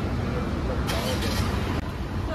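A car's engine idling under a steady low street rumble, with a short burst of hiss about a second in and faint voices around it.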